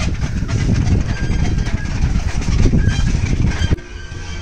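A row of brass prayer wheels being spun by hand one after another, a continuous rumbling rattle with many small clicks as the wheels turn on their spindles. It cuts off suddenly near the end.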